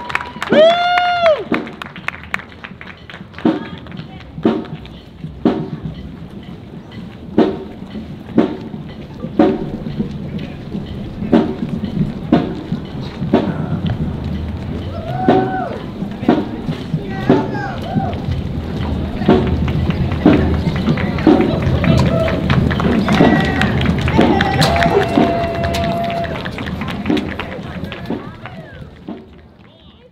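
Marching band drumline keeping a steady marching beat, about one sharp drum hit a second, while the band marches off.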